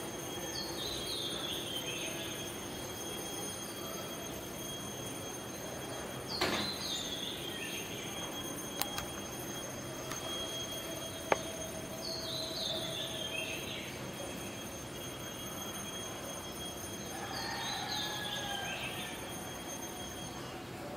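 A bird sings a short phrase of chirps that falls in pitch, repeated about every five to six seconds, over a faint steady hum. Two sharp clicks come in the middle.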